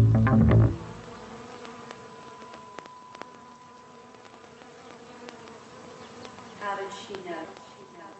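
A loud, low buzz that cuts off abruptly less than a second in, over a faint steady high tone. Around seven seconds in comes a short cluster of falling tones.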